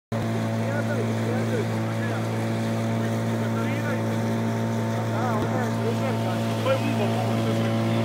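Volvo Crescent 25 hp outboard motor running at a steady cruising speed, pushing a small boat along a river with an even, unchanging drone.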